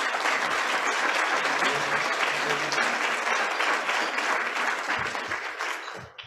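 An audience applauding: steady, dense clapping that dies away in the last second.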